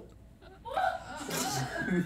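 About half a second of quiet, then a man's soft, breathy voice sounds, low laughter rather than clear words.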